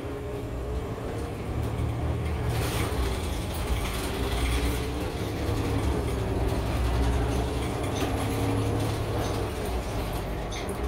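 Inside a moving city bus: the engine and drivetrain run with a low rumble and a faint whine that wavers up and down. The sound grows louder after about a second and a half, with occasional light clicks.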